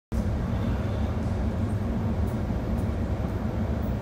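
Steady low rumble of a glass furnace burning, an even noise with no rhythm or breaks.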